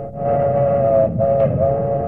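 Train whistle blowing a steady two-note chord over the rumble of a moving train, with a short break a little past a second in: a radio drama sound effect.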